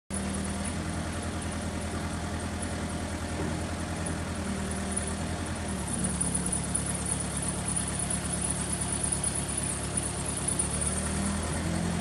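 Mini excavator's diesel engine running steadily while the boom and bucket are worked, getting a little louder about halfway through, with a steady high-pitched whine over it. The machine has low hydraulic power, diagnosed as a damaged hydraulic piston pump.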